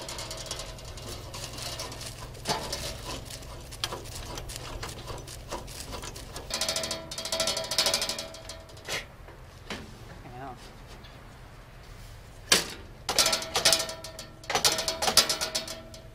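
Sheet-metal barn-door flaps on Fresnel studio lights rattling and clanking as they are handled and fitted, with two louder bouts of ringing metallic clatter, one in the middle and one near the end.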